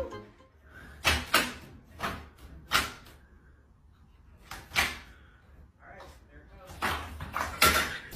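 Metal mail slot flap in a front door clacking open and shut as a cat paws at it: about eight sharp snaps at uneven intervals, with quiet in between.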